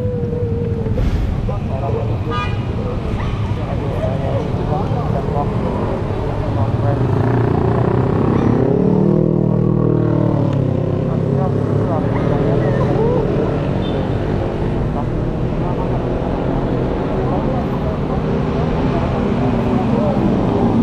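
Road traffic going by, a steady rumble of engines and tyres, with one vehicle passing close about nine seconds in, its engine note rising and then falling away.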